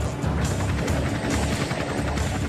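Helicopter running: steady rotor and engine noise, with background music mixed under it.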